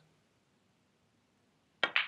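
Near silence, then near the end two sharp clicks a split second apart: a pool cue tip striking the cue ball, then the cue ball hitting a red object ball.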